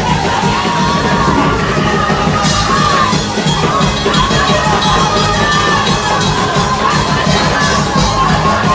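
A packed church congregation shouting and cheering over a loud worship band with drums, at full volume throughout.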